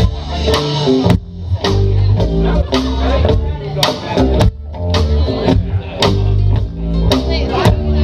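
Live rock band playing an instrumental passage: electric guitar, electric bass and mandolin over drums keeping a steady beat of about two hits a second.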